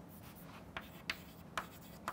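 Chalk writing on a chalkboard: three short, sharp chalk strokes in the second half, one after another as letters are formed.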